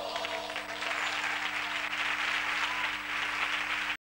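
Theatre audience applauding as the choir's song ends. The clapping swells about a second in and cuts off suddenly just before the end.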